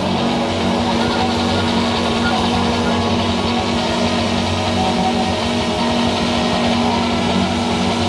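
Live band of electric guitar, bass guitar, drum kit and cello playing, with a stack of steady held tones sustained through the passage.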